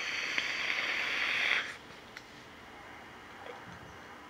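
Long draw on a Drop Solo rebuildable dripping atomizer: a steady hiss of air with the fused Clapton coil sizzling, which cuts off about one and a half seconds in.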